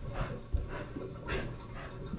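A dog panting close to the microphone: a few soft, breathy pants about half a second apart, heard from a camera strapped to its back.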